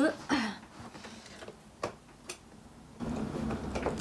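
Two faint, short clicks about two seconds in, then low rustling from movement close to the microphone.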